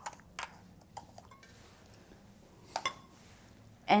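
A few light clinks and knocks of kitchen dishes being moved and set down on a countertop: small measuring cups and a stainless steel mixing bowl. The loudest knocks come as a quick pair near three seconds in.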